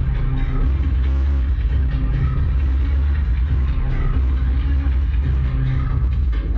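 Loud live electronic pop music from a band on stage, recorded from inside the crowd on a phone microphone, so the heavy bass overloads into a constant rumble.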